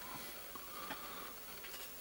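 Faint handling sounds as the black plastic top cover of a Gotek floppy drive emulator is lifted off its casing and set down, with a small click about a second in.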